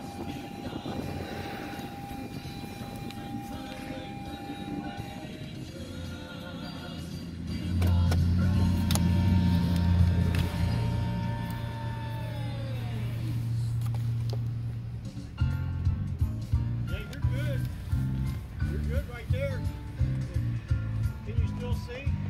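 Music playing through a car's sound system. It begins with a long-held low note and then settles into a steady pulsing bass rhythm about two-thirds of the way in.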